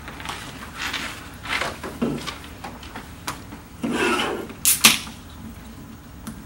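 Paper and notebooks being handled on a desk: pages rustling and covers moving in several short bursts, with two sharp clicks near the end.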